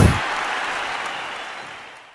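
Live concert audience applauding, fading away steadily after a last low boom from the music right at the start.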